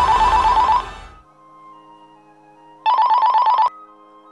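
Telephone ringing twice, a fast trilling ring of under a second each time. The second ring cuts off suddenly as the phone is picked up.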